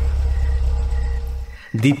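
Car engine idling with a low steady rumble, then switched off about a second and a half in, the rumble cutting out abruptly.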